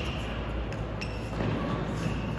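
Indoor tennis court sounds in a reverberant hall: two short, sharp knocks of the tennis ball, one about three quarters of a second in and the next a quarter-second later, over steady background noise, with faint voices near the end.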